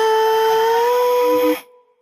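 Sped-up, pitch-raised nightcore pop song holding a single high note that rises slightly in pitch over the backing. The music then stops after about a second and a half, fading quickly to silence.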